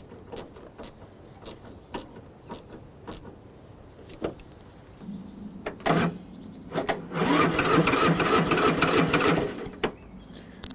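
Ratchet clicking as a socket tightens a nut. Then a click, and the Briggs & Stratton Intech 6.5 OHV engine cranks steadily on its electric starter for about three seconds without firing, the newly replaced starter solenoid now engaging the starter motor.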